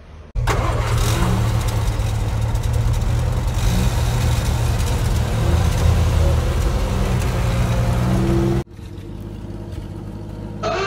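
Car engine running loudly with road noise, heard from inside the cabin while driving; it cuts in abruptly just after the start and cuts out abruptly near the end, leaving a quieter traffic hum.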